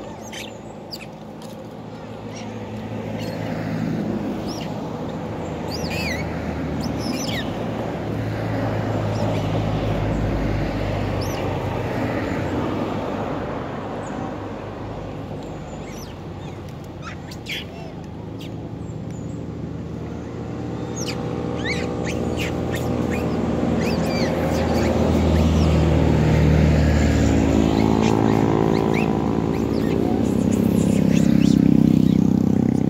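Vehicles passing on the road, their engines swelling and fading, loudest as one builds up near the end. Short high chirping calls of long-tailed macaques are scattered through.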